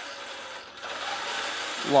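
Geared electric drivetrain of a 1/10 scale all-metal 8x8 RC truck whirring as its wheels spin freely off the ground with the differentials unlocked; the sound dips briefly and builds again about a second in.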